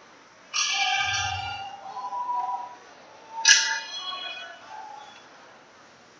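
Two sudden knocks with a ringing, clinking tail, about three seconds apart. Each dies away over a second or so, and the first has a dull thud under it.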